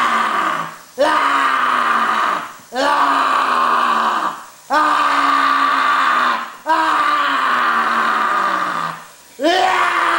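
A voice screaming in long, strained cries that slide down in pitch, a new cry starting about every two seconds.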